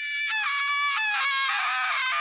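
A high-pitched, drawn-out wailing cry of "Ahhh", one long held voice whose pitch wavers and steps down a couple of times.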